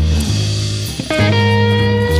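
Psychedelic hard rock band recording in an instrumental passage: electric guitar over bass guitar, with a new held guitar note coming in about a second in.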